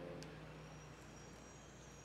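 Near silence: quiet room tone with a steady low hum and one faint click just after the start.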